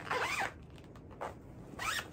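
Zipper being pulled open, in a short run at the start and another brief one near the end.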